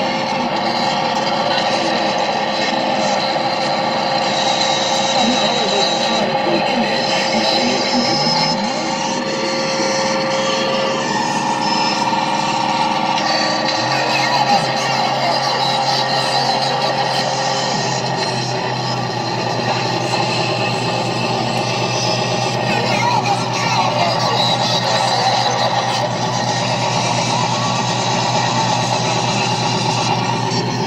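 Improvised noise music played through a chain of guitar effects pedals: a dense, steady wash of noise with several held tones. A low drone comes in about halfway through, and a higher held tone drops out a little later.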